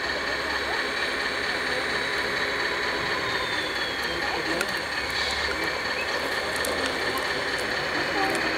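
Radio-controlled model O&K excavator working, its motors and gears whirring steadily as it digs into the dirt pile and lifts the bucket, with a few small clicks in the second half.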